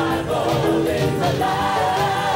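Mixed choir of men and women singing a gospel song in full voice, with sustained notes over a steady instrumental accompaniment.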